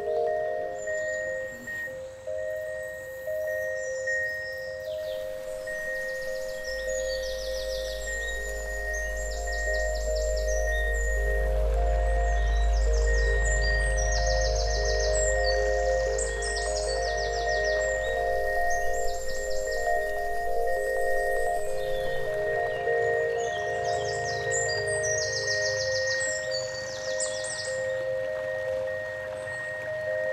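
Gentle instrumental music of held, chiming mallet-like tones over a steady high note, with short clusters of rapid high ticking; a deep bass swell comes in about seven seconds in and fades away after about twenty.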